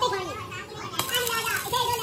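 People's voices talking over one another, with a single sharp knock about a second in.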